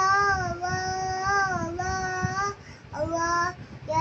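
A young boy singing, holding long notes that bend gently in pitch, with a short break about two and a half seconds in before the next note.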